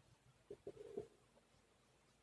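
A bird's brief, faint, low coo about half a second in, over near silence.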